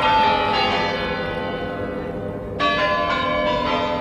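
Bells ringing: a cluster of bell tones struck at the start, slowly fading, then struck again about two and a half seconds in.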